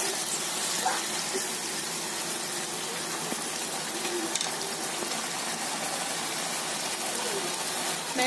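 Diced chicken frying in hot oil in a pan on high heat, a steady sizzle.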